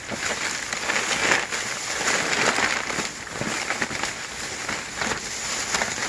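Thin plastic trash bags rustling and crinkling continuously as they are pulled open and rummaged through by hand, with loose paper shuffling inside.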